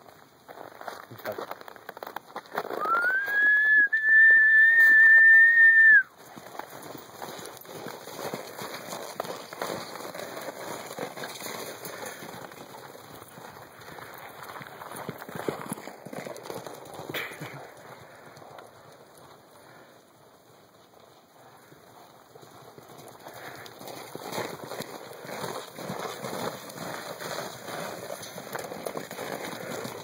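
A long whistle, rising in pitch and then held for about three seconds, a few seconds in. After it comes the irregular, soft drumming of horses' hooves galloping over snow-covered ground.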